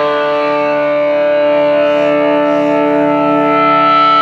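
1967 Gibson SG Junior electric guitar played through a vintage Fender tube amp, holding one sustained chord that rings on steadily. A single high feedback tone swells in over the last half second.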